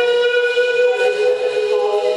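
A sustained electronic chord of several held, whistle-like tones, played live on an electronic instrument; the lower notes shift to a new chord near the end.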